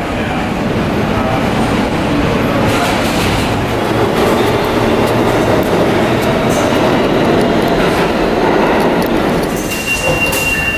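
New York City subway train running, heard from inside the car: a steady, loud rumble and rattle of wheels on the track that grows a little louder over the first few seconds.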